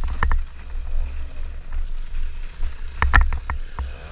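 Wind buffeting a helmet-mounted camera's microphone as a scooter rides a bumpy dirt trail. Sharp knocks and rattles come a few times, the loudest about three seconds in, as the scooter hits bumps.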